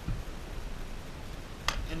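Quiet handling of a plastic project box and a soldering iron on a tabletop, with one sharp click a little before the end.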